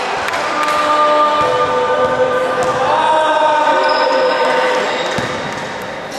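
Several spectators' voices chanting in long, held notes that overlap, with a basketball bounced a few times on the gym floor.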